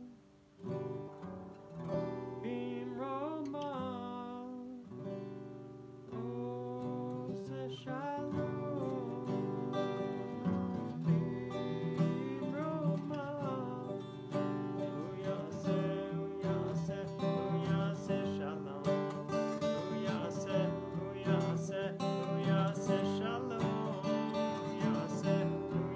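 Acoustic guitar played, with a man's voice singing a melody over it at times.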